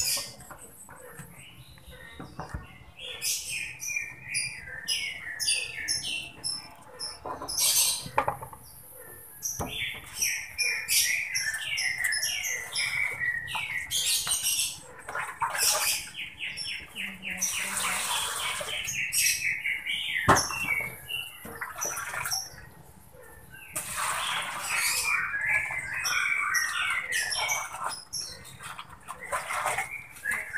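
Small birds chirping and trilling over and over: rapid series of short, high, falling notes, with a few brief pauses.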